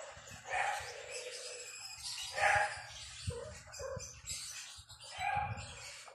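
Kittens mewing, a string of short high calls, the loudest about half a second in, midway and near the end.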